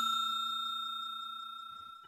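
Ringing tail of a bell 'ding' sound effect from a subscribe-button notification-bell animation, fading away steadily and dying out near the end.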